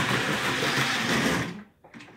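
Model train running along its track with a steady whir of motor and wheels, then stopping abruptly about one and a half seconds in.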